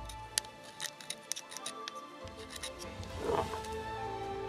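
Background music over light, irregular clicks and scrapes of a knife tip on a metal hydraulic valve body, picking off a leftover piece of old gasket.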